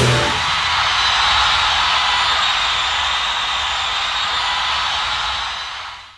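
Cymbals of a rock drum kit ringing out in a steady high wash after the song's final crash, fading out near the end.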